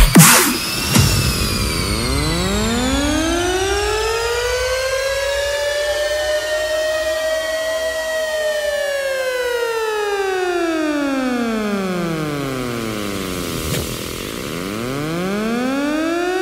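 Air-raid siren wailing, sampled in a dubstep track, heard just after the loud music cuts off at the very start. It makes one slow rise in pitch that peaks about eight seconds in, then falls away, and begins to rise again near the end.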